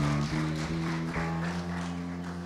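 A church worship band plays softly, holding a sustained chord.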